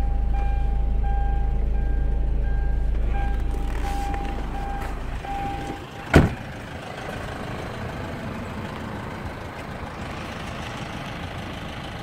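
2007 Hyundai Santa Fe's cabin warning chime beeping repeatedly, then the car door slams shut once about six seconds in, followed by outdoor background noise.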